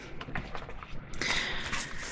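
Tarot cards being handled and shuffled: a few light card taps, then a denser rustle of shuffling cards from a little past one second in.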